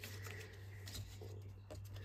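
Faint handling of paper craft card: soft rustles and a few light ticks as card pieces are picked up and folded, over a steady low electrical hum.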